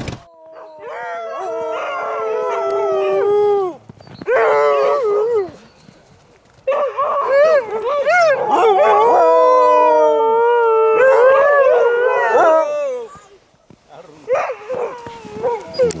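A pack of harnessed sled huskies howling together, several long wavering howls overlapping. They howl in three bouts with short pauses between, the last running about six seconds.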